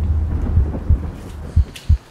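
A deep rumble that fades away, with a few dull thuds in the second half.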